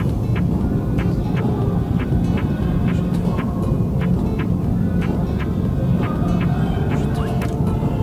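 Background music with a steady beat over a sustained low drone.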